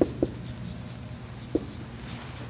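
Dry-erase marker writing on a whiteboard, with a few short clicks of the tip against the board.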